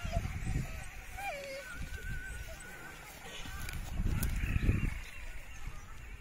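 A dog whining in high, wavering cries during the first half, with a louder low rumble of wind or handling noise on the microphone a little past the middle.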